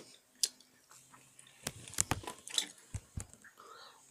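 Close-up chewing of soft, chewy sour rainbow candy belts, heard as scattered sharp mouth clicks and wet smacks.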